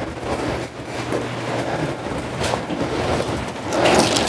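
Thin Bible pages rustling as they are leafed through to a passage, over a low steady hum.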